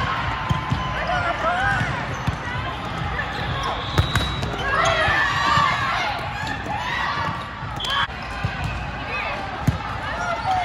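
Volleyball rally: sharp smacks of the ball being passed, set and hit, the strongest about four seconds in and again near the end, with sneakers squeaking on the court and players and spectators calling out.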